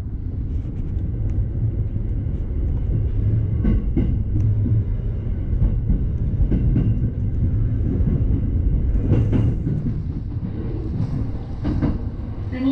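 Electric commuter train running along the track, heard from just behind the driver's cab. A steady low rumble grows louder in the first second, with a few sharp wheel clacks from the rails.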